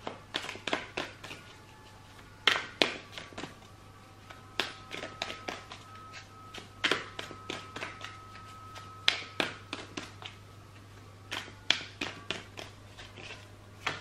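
A deck of tarot cards being handled in the hands, in several short runs of crisp card clicks every couple of seconds, with a card drawn off the deck near the end.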